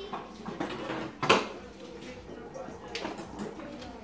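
Faint, indistinct voices in a small room, with a single sharp knock about a second in.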